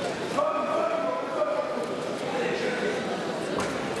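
Indistinct voices echoing in a large sports hall, with one drawn-out voice in the first half and a knock near the end.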